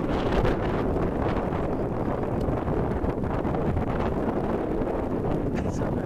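Strong wind buffeting the camera microphone: a steady low rumble.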